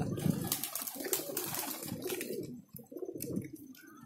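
Domestic pigeons cooing, low wavering calls overlapping one another, with a few scattered light clicks.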